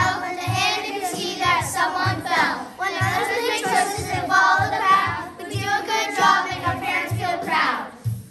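A group of young children rapping the lyrics in unison over a backing beat with a steady low thump about twice a second. The voices cut off abruptly right at the end.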